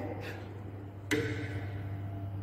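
Plastic stopcock of a glass burette being turned closed: one sharp click about a second in, with a brief ring after it, over a steady low hum.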